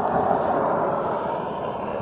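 Road traffic: a passing vehicle's steady rush of tyre and engine noise, loudest at the start and slowly fading.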